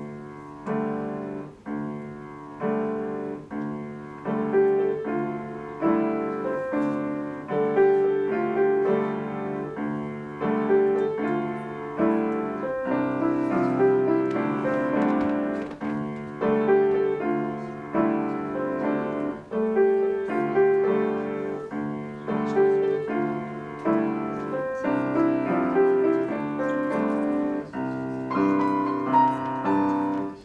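Solo grand piano played, opening a piece with chords and notes struck roughly once a second.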